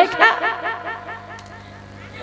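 A woman laughing into a stage microphone: a quick run of short pitched 'ha' pulses that trail off within about a second.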